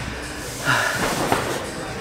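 Indistinct voices and the general noise of a large indoor bouldering hall, with a short breathy sound about three-quarters of a second in.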